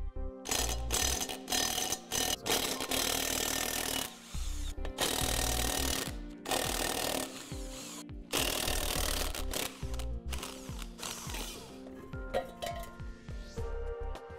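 Cordless impact wrench hammering trailer lug nuts loose, in a series of bursts about a second long with short pauses between, as each nut is spun off the wheel.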